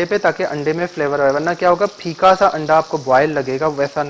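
A man talking continuously over the steady sizzle of battered eggplant pakoras deep-frying in a kadai of hot oil.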